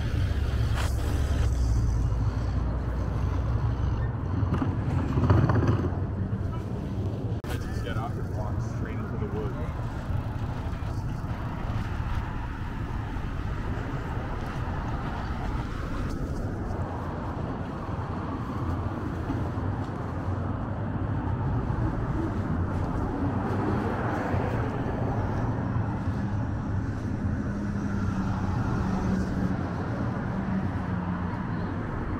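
City street ambience: car traffic passing, loudest in the first few seconds, with passersby talking.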